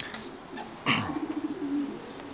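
Domestic racing pigeons cooing: a low, pulsing coo starts about a second in and lasts most of a second.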